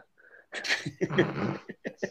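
A person's breathy vocal exhalation, starting with a hiss of breath and going into a short voiced sound, about half a second in and lasting about a second.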